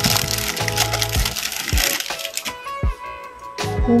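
Thin plastic packaging bag crinkling and crackling as it is handled and pulled open, dying away after about two and a half seconds. Background music with a steady beat plays throughout.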